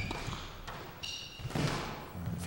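Squash rally sounds: soft knocks of the ball against racket and walls, and a short high squeak of a player's shoe on the court floor about a second in.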